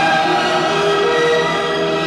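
Orchestral film score music with a choir singing long held chords that shift slowly from one to the next.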